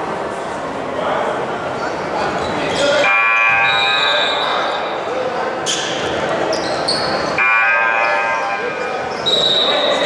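Basketball game noise in a school gymnasium: a ball bouncing on the hardwood, shoes and players' voices, all echoing in the hall. Twice, about three seconds in and again about seven and a half seconds in, a steady held tone sounds for a little over a second.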